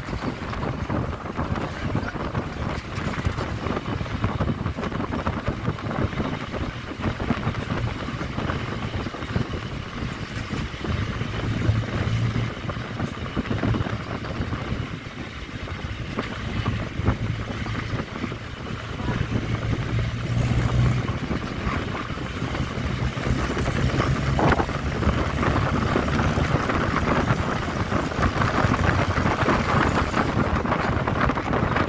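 A moving road vehicle's engine and tyre noise, heard at an open side window, with wind buffeting the microphone. The sound is steady throughout and grows somewhat louder in the last few seconds.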